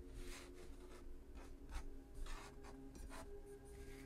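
Tarot cards being slid and gathered across a tabletop by hand: a run of soft, faint papery swishes.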